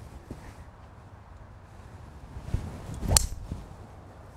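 Golf tee shot with a three wood. A short swish of the swing, then one sharp click as the clubface strikes the ball about three seconds in.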